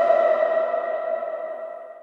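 The final held note of a TV programme's opening theme music: one steady ringing tone that fades away over about two seconds.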